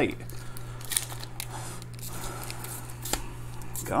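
Vacuum-sealed foil trading-card pack crinkling and crackling faintly as fingers pinch and pull at it, with scattered sharp ticks of the foil. The seal is tight and resisting being torn open.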